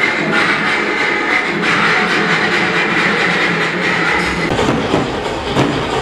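Loud festival procession din, music and crowd together. About four and a half seconds in, a street drum band takes over, beating large drums in a driving rhythm.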